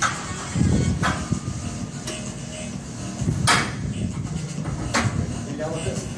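Weight-room background music and voices, with four sharp clanks from the loaded Smith-machine bar and plates, unevenly spaced.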